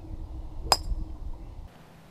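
A golf club striking a golf ball: one sharp click about two-thirds of a second in, with a short metallic ring, over a low background rumble.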